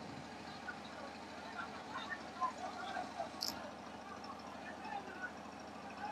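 Scattered distant voices and shouts from a large crowd over a vehicle engine idling steadily close by.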